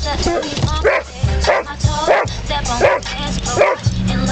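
Doberman pinscher barking in a rapid string, about one bark every three-quarters of a second, with music playing underneath.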